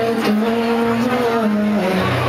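Live solo acoustic set: a man's voice holds one long sung note over strummed acoustic guitar chords.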